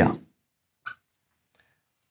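Dry-erase marker squeaking on a whiteboard as a line is drawn: one short squeak about a second in and a fainter stroke just after. The tail of a man's word at the very start.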